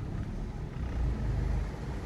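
Low, steady rumble of a car's engine and running gear heard from inside the cabin while the car moves slowly to park.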